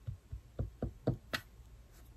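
Fingers tapping on a cloth-covered table: about six quick, light knocks in a second and a half, then stopping.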